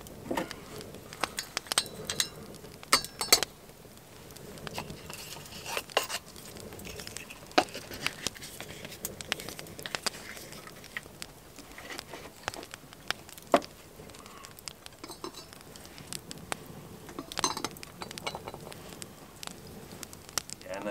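Wood fire crackling under a hanging iron pot, with a few metallic clinks and rattles of the pot and its iron lid, the clearest about two to three seconds in and again near the end.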